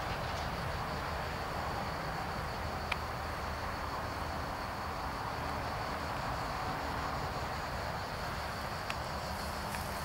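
Steady drone of distant motorway traffic, with insects chirring over it and two faint clicks, one about three seconds in and one near the end.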